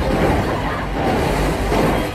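Film sound effects of a meteor strike on a city street: a loud, dense, continuous rumble of explosion and crashing debris, heavy in the bass.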